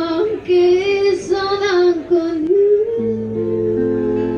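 A woman singing with acoustic guitar accompaniment; about three seconds in she settles into a long held note over a ringing guitar chord.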